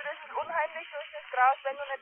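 Speech only: a voice that sounds thin and tinny, with the lows and highs cut off.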